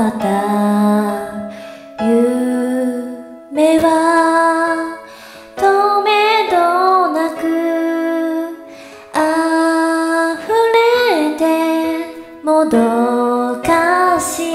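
A young woman singing solo into an earphone microphone, in phrases of one to three seconds with long held, wavering notes and brief breaths between them, over a quieter steady musical accompaniment.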